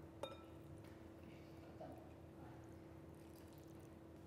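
Near silence: milk poured softly from a jug into a glass bowl of flour and egg, over a faint steady room hum, with a small click just after the start.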